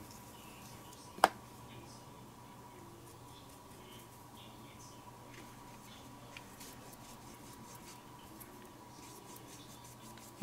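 Faint scratching of a water brush pen scrubbing watercolour pigment across paper, with one sharp click about a second in.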